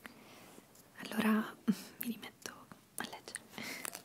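Whispered speech, mostly breathy with one brief voiced stretch, broken by small sharp clicks.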